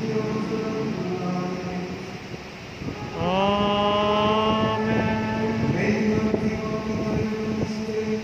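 Liturgical chant in a church, with a steady held tone underneath; about three seconds in, a voice scoops up into a long held note lasting more than a second.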